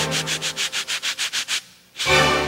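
Wooden back scratcher rasping quickly up and down a back through a cotton T-shirt, about eight strokes a second. It stops about one and a half seconds in.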